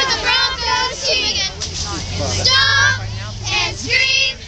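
A squad of young girl cheerleaders chanting a cheer together in high voices, in short shouted phrases.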